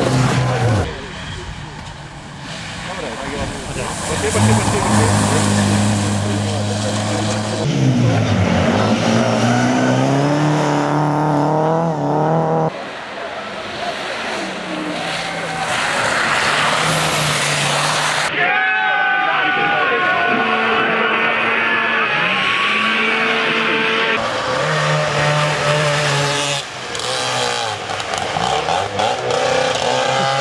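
Rally car engines revving hard as the cars drive past one after another. The engine note climbs and then drops in steps at each gear change.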